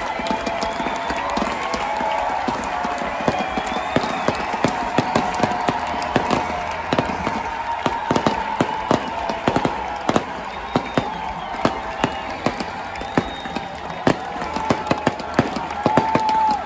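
Stage pyrotechnics firing in many sharp cracks and pops, thickest in the second half, over a large cheering festival crowd.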